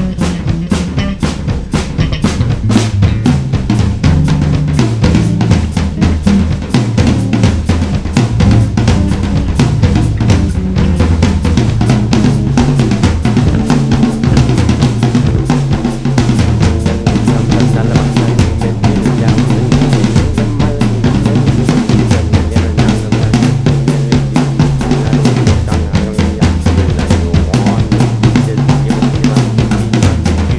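Instrumental band music: a busy drum kit with bass drum and snare hits packed close together, over a bass line that steps from note to note.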